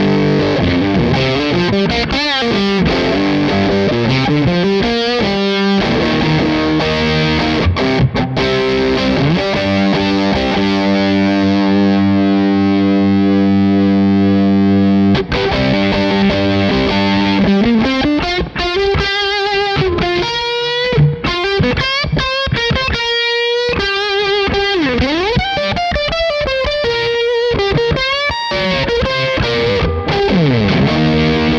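Single-coil electric guitar played through the Crazy Tube Circuits Motherload's Big Muff-inspired fuzz circuit. Distorted riffing gives way to a chord held with long sustain about a third of the way in, which stops suddenly. Lead lines with string bends follow.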